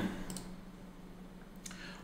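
Two faint computer mouse clicks over quiet room tone, the second near the end.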